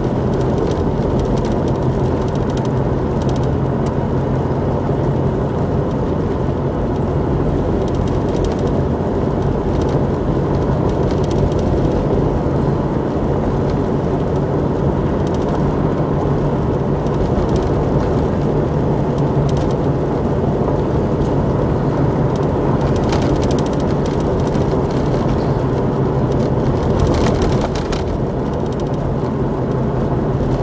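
A Jeep driving steadily along a gravel road: constant engine and tyre noise with a low hum and scattered short clicks, getting a little quieter near the end.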